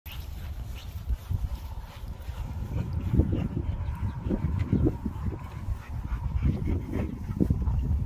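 A dog panting in quick short bursts, clustered in the middle and again near the end, over a steady low rumble.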